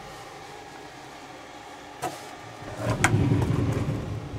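Wooden pocket sliding door in a travel trailer being pulled out along its track: a click about two seconds in, then a low rolling rumble with a knock about three seconds in.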